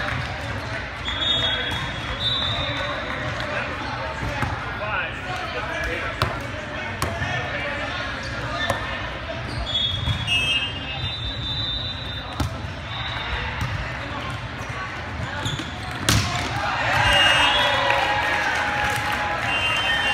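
Echoing sports-hall din from many volleyball courts at once: a babble of voices, short high sneaker squeaks on the court floor and scattered ball hits. About 16 seconds in a sharp smack rings out, followed by a louder burst of shouting.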